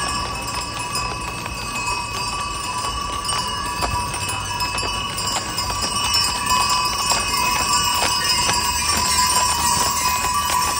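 Harness bells on a team of draft horses jingling steadily as the horses pull a brewery dray, with hooves clip-clopping on the paved street, the hoofbeats coming thicker in the second half.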